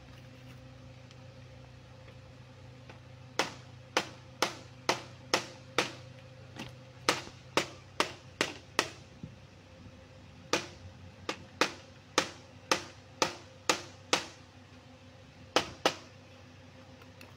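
Sharp taps of a light hammer on the metal crimp tabs of a Proton Saga radiator's header, closing them over the plastic tank to clamp it onto the core over fresh sealant. The taps come in two runs of about two a second, then two more near the end.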